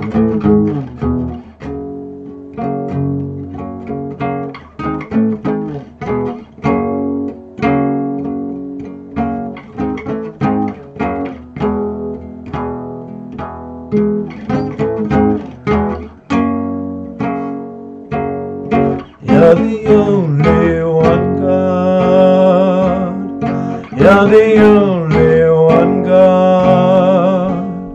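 Nylon-string classical guitar played with plucked notes, a slow picked melody over held bass notes. About nineteen seconds in, a man starts singing over the guitar.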